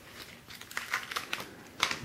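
Phone packaging being handled: quiet taps and rustles of the cardboard box tray and the phone's plastic wrap, with a sharper click near the end.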